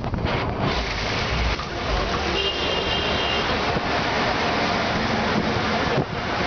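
Steady rush of wind on the microphone and road noise from a bicycle riding in traffic, with a brief thin high-pitched tone about two and a half seconds in.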